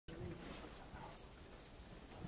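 Faint room tone of a large hall, with no distinct event.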